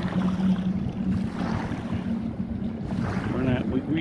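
Wind on the microphone over a steady low hum, with small river waves lapping at the stone bank. A voice starts faintly near the end.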